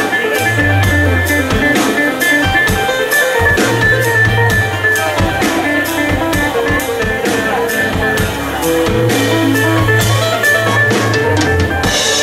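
Live instrumental trio of fiddle, guitar and drum kit playing, with a busy, steady drum beat under the melody and long low bass notes that come and go.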